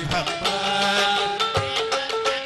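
Live Sudanese band music in an instrumental passage between sung verses: a melody of held notes stepping from pitch to pitch over quick hand-drum strokes.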